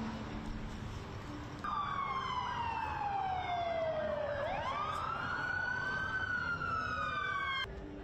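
Emergency vehicle siren wailing: its pitch falls slowly for about three seconds, then rises again. It starts and cuts off abruptly.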